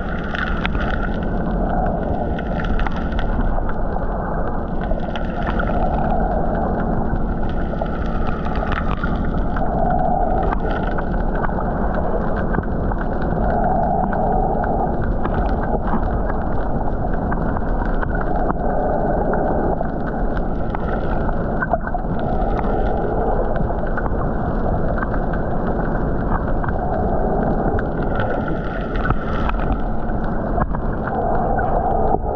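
Muffled underwater sound picked up by a submerged camera: steady water noise with a faint steady hum, and hissy swells that come and go every few seconds.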